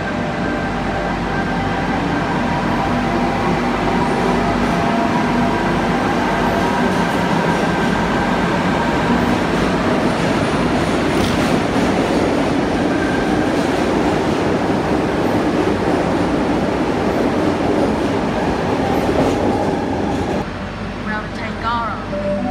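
A Tangara double-deck electric train pulling out of an underground platform: motor hum and wheel rumble, echoing off the station walls, held loud and steady and then dropping away suddenly about twenty seconds in as the train clears the platform.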